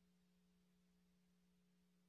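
Near silence, with a faint steady low hum.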